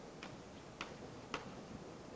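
Chalk tapping against a blackboard during writing: three light, sharp taps about half a second apart, over faint room noise.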